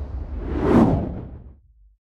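Whoosh sound effect for a logo sting, swelling to a peak under a second in and then fading away over a low rumble, dying out by about a second and a half.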